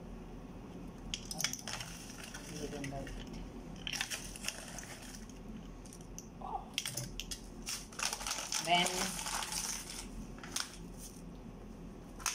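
Foil-lined coffee pouch crinkling in bursts as it is handled and folded, with light clicks of plastic measuring spoons against a glass cup.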